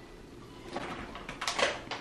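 Rustling of a plastic bag of apples, with a few light clicks and knocks from a red plastic cup being jabbed at it, starting a little under a second in.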